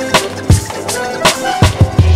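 Old-school hip-hop instrumental beat: sharp drum hits about three a second over short pitched notes, with strong low kick hits about half a second in and near the end.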